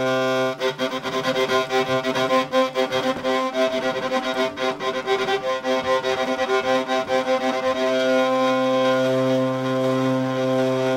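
Bass drone string of a homemade laser-cut and 3D-printed hurdy-gurdy, sounded by the hand-cranked rosined wheel. It holds a steady drone, turns rough and choppy with rapid rattling from about half a second in until about eight seconds, then settles back into a steady drone.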